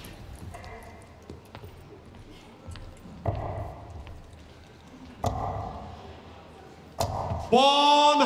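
Three steel-tip darts striking a bristle dartboard about two seconds apart, each a sharp thud. Near the end the caller starts a loud, drawn-out call, the score of a maximum 180.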